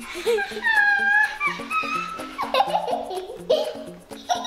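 Light background music with a steady stepping bass line, over which a child giggles and laughs in short bursts.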